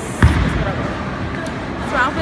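A single deep thump about a quarter of a second in, over a steady background of voices; a voice speaks briefly near the end.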